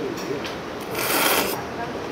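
A person slurping cold kimchi kalguksu noodles: one slurp about a second in, lasting about half a second.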